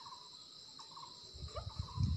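Faint forest insect chorus: a steady high-pitched drone with short chirps repeating every so often. Low bumps join in during the second half.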